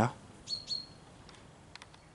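A small bird chirps: two short high notes about half a second in, the second drawn out briefly into a thin whistle. A few faint clicks follow.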